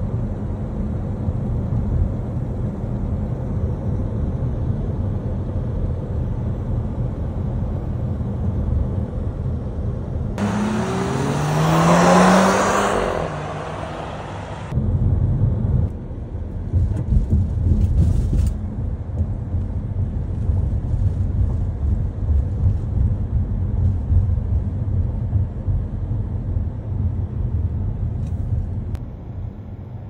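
A car driving, heard from inside the cabin: a steady low rumble of road and engine noise. About ten seconds in, a louder, hissier stretch of about four seconds cuts in abruptly, with an engine note rising in pitch as the car speeds up, then cuts off just as abruptly.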